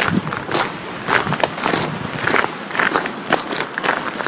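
Footsteps on a forest path, a series of irregular crunching steps.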